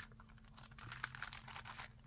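Faint rustling and small clicks of cellophane-bagged, cardboard-backed craft embellishment packs being picked up and shuffled by hand.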